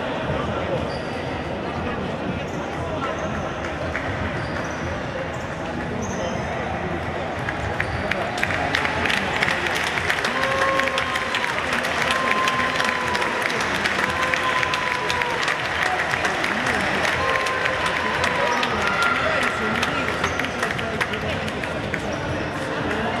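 Crowd voices in a sports hall, then from about eight seconds in louder clapping and cheering as the winning youth futsal team lifts the trophy, with a run of long held chanted notes.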